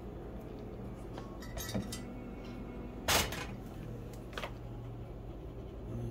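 A steel saucepan and spoon being handled: a few light clinks, then a louder short clatter about three seconds in as the pan goes onto the electric coil burner, and a sharp click about a second later. A steady low hum runs underneath.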